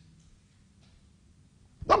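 A pause in conversation: a faint hummed 'mm' fades out at the start, the room is nearly silent, and then a man starts speaking again near the end.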